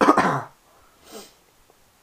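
A man coughs once, loudly, then gives a fainter short breath about a second later.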